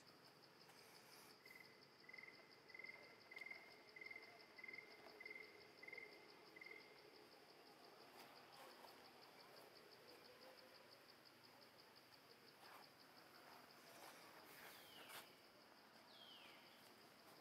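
Faint insect chirring, a steady, rapidly pulsed high trill. A lower series of about ten short, evenly spaced notes runs alongside it from about a second and a half in. A couple of short falling calls come near the end.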